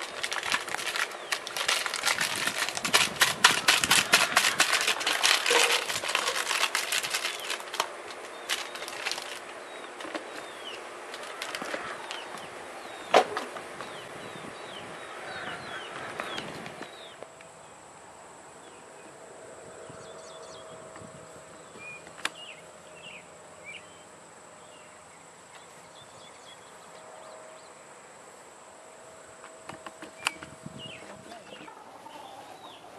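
A plastic bag shaken and crinkled overhead in a fast crackling rustle for about eight seconds, then only now and then. Later, faint bird chirps over a steady high hum, with a sharp snap about 22 seconds in.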